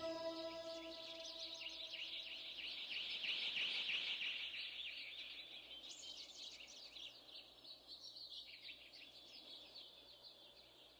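Faint, high-pitched bird chirping and twittering: a dense run of rapid calls that swells about three to four seconds in and then trails off. The last ringing notes of music die away in the first second or two.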